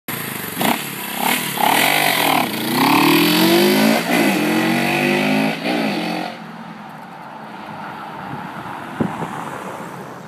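1970 Honda CB350's parallel-twin engine accelerating away, its pitch rising in several sweeps with a break between each as it goes up through the gears. Loud for about the first six seconds, then dropping away quickly as the bike goes out of earshot.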